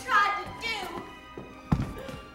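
A person's voice in the first second, then a single dull thump about a second and a half in.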